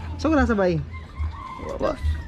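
A rooster crowing, with a drawn-out falling call early on and a long, faint held note after it. A motorbike engine runs low underneath.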